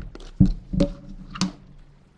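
Blue twist-on lid of a plastic food container being unscrewed and set down on a wooden desk. Handling noise is broken by a few sharp plastic clicks and knocks, the loudest about half a second in.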